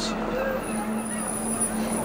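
A steady low hum with a thin, faint high whine above it: a background drone in a TV drama's soundtrack.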